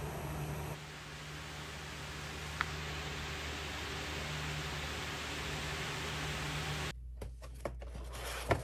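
Room tone: a steady hiss with a low hum and one faint tick about two and a half seconds in. Near the end it changes to quieter ambience with light clicks and crinkles as hands start handling a cardboard mailer box.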